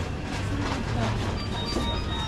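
Convenience store ambience: a steady low hum under faint background music and voices, with a few short faint high beeps near the end.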